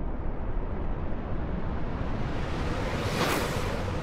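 Cinematic intro sound effect: a steady deep rumble with a rushing whoosh that swells to a peak about three seconds in, then eases off.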